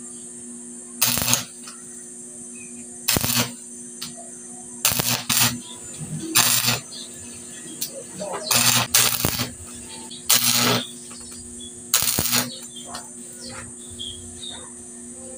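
Stick (arc) welder striking short tack welds on steel wire mesh: the arc crackles in about nine brief bursts, each under a second, spaced a second or two apart.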